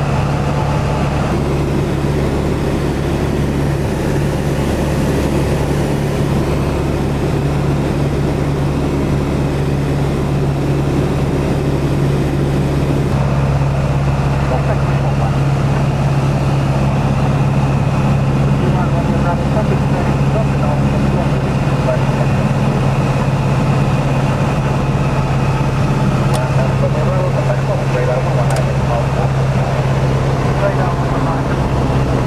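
Piper PA-28 Cherokee's piston engine and propeller droning steadily inside the cockpit cabin on approach, its tone shifting slightly about a third of the way through.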